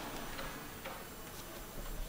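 Faint, light ticking, about two ticks a second, over a low background hiss.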